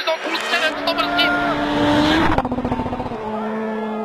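Rally car engine at high revs passing by. Its note climbs slightly and is loudest about two seconds in, then drops to a lower steady note as it goes away. A voice is heard at the start.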